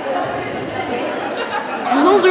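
Indistinct chatter of many overlapping voices from players and spectators in a school gymnasium, with no single voice standing out.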